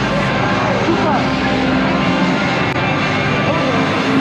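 Steady, loud din of a crowded street: many indistinct voices over a constant low hum.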